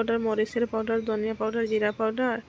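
A woman talking in continuous speech, with no other sound standing out.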